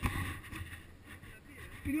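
A single knock right at the start, then faint scuffing and a low wind rumble on a body-worn camera as a climber moves on a granite rock face.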